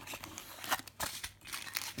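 Plastic packets of sugar rustling and crinkling as they are handled and pulled out, with a few sharp, irregular crackles.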